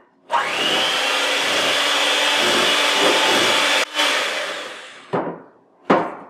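Electric hand mixer running steadily, beating an egg into creamed butter, sugar and lemon juice in a glass bowl. It dips briefly about four seconds in, then winds down over about a second, and two short knocks follow near the end.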